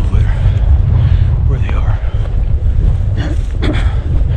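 Strong wind buffeting the camera microphone, a heavy low rumble despite the windscreen.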